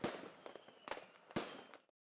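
Fireworks going off: three sharp bangs, the last two close together, with crackling in between, before the sound cuts off near the end.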